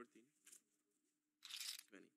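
Near silence with a faint steady hum, broken by a short hiss about one and a half seconds in.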